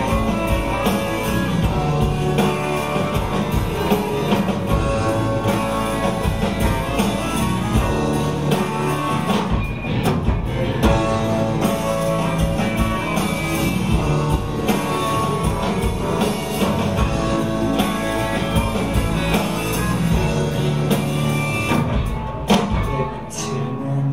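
A live rock song played on stage with no sung words: guitar playing over drums, in a steady instrumental passage that eases off slightly near the end.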